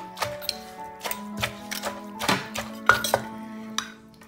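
Wooden pestle and metal spoon knocking and scraping against a clay mortar as papaya salad is pounded and turned, in irregular sharp knocks about once or twice a second, over background music.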